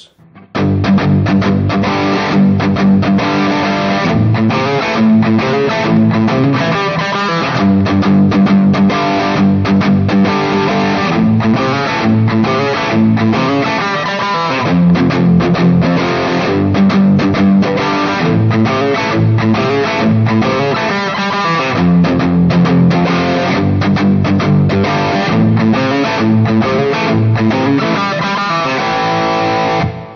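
Les Paul-style electric guitar playing a rock rhythm part in a shuffle feel: palm-muted power chords that are left to ring out on the last beats of a bar, alternating with an open-A riff.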